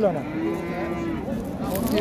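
A calf moos once, a single steady call lasting about a second.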